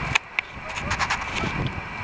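A flock of Canada geese honking in flight, many short calls overlapping faintly.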